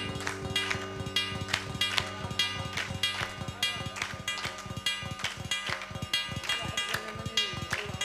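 Oud (Arabic lute) played solo, a run of plucked notes several to the second over ringing lower strings, in an instrumental interlude between sung verses.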